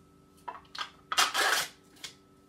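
Peel-off lid being torn back from a single-serve Greek yogurt cup: two short crinkles, then a longer, louder rasp of the lid coming away just past a second in.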